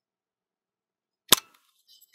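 The back door latch of a Contax TVS film camera releasing with one sharp snap a little over a second in, as the back is opened for loading film, followed by faint handling.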